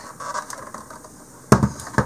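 Electric hand mixer and its metal wire beaters handled over a stainless steel bowl with the motor off: faint rattling, then a sharp metallic click about one and a half seconds in and another near the end.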